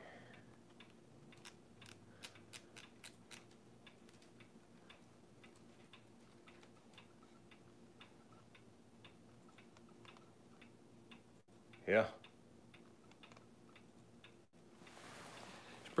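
A wall clock ticking steadily and faintly in a quiet room. Early on there is a quick run of about eight sharp clicks, roughly four a second.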